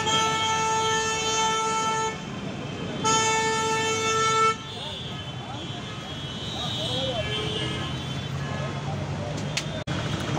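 A vehicle horn held in two long, steady blasts: the first ends about two seconds in, the second lasts about a second and a half, over a street's traffic noise.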